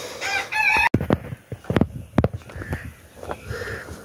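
A rooster crowing, cut off abruptly about a second in, followed by scattered clicks and knocks.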